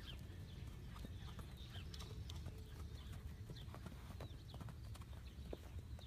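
Hooves of a mare and her young foal walking on straw-covered dirt: soft, irregular hoofbeats.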